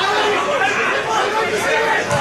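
Football crowd in the stands, many voices calling and chattering at once with no single voice standing out.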